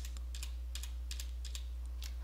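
Typing on a computer keyboard: a quick run of light key clicks, over a steady low hum.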